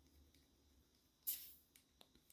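A short hiss of escaping air about a second and a quarter in, as the shock pump's head is unscrewed from the air fork's valve and the pump's gauge drops from 80 psi.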